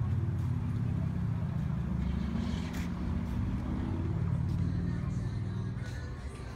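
Low, steady rumble of a motor vehicle running nearby, dropping off near the end.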